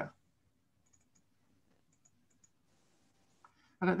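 A few faint computer mouse clicks, scattered about a second and two seconds in, against near silence.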